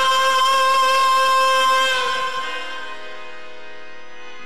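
Qawwali music: a long, steady held note, sung over a sustained harmonium-like drone. About halfway through the held note stops, and a quieter sustained chord carries on alone.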